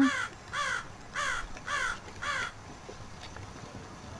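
A crow cawing in a quick, even series of short, harsh caws, about two a second, five of them, stopping about halfway through.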